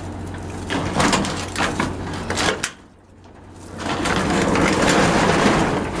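Sharp knocks, then a rough scraping noise close to the microphone, over the low running of the M8 Greyhound's Hercules six-cylinder petrol engine.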